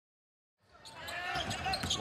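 Basketball game audio fading in from silence about half a second in: arena crowd noise with a ball bouncing on the hardwood court.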